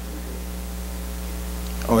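Steady low electrical mains hum in the microphone and sound-system audio, unchanging through the pause.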